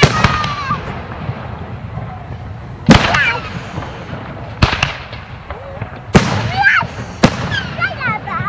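Aerial fireworks bursting overhead: about half a dozen sharp bangs, a second or two apart, with two in quick succession around the middle. Spectators' voices call out between the bursts.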